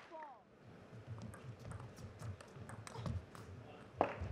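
Quiet arena between table tennis points. A shoe squeaks on the court floor right at the start, followed by faint, scattered taps.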